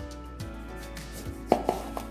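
A knife slicing through an orange on a plastic cutting board, with a few short knocks of the blade against the board, the loudest about one and a half seconds in.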